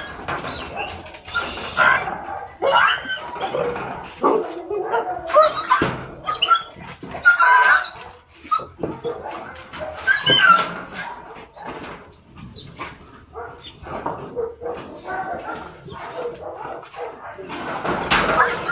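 A dog whimpering and yelping, with some barks, in short irregular calls throughout, mixed with people's voices.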